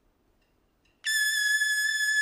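Unaccompanied trumpet that starts suddenly about a second in on a single very high note and holds it steady.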